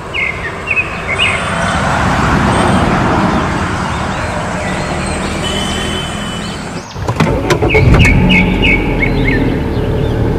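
Street traffic noise, swelling as a vehicle passes, with short bird chirps. About seven seconds in the sound changes abruptly to a small engine running, with clicks and more chirps.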